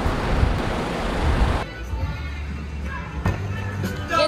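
Wind rushing on the microphone outdoors. About a second and a half in it cuts to a quieter car interior with a low steady hum and faint background music.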